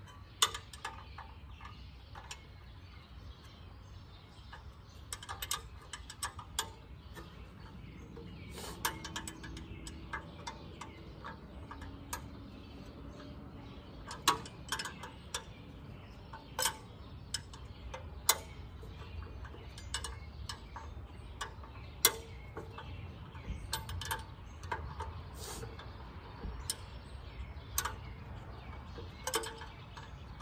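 Hand tools working a tight bolt on a Farmall A tractor's radiator fan shroud: irregular metal clicks and clinks, scattered through the whole stretch.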